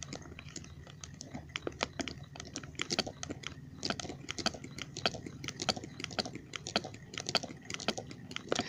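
A home-built magnetic Ringbom Stirling engine worked by hand, making many small, irregular clicks and light knocks, a few a second, as the magnet pulls the displacer up until it knocks against the top.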